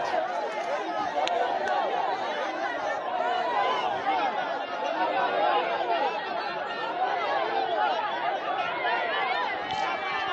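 A dense crowd of many people talking at once, a steady mass of overlapping voices with no single speaker standing out.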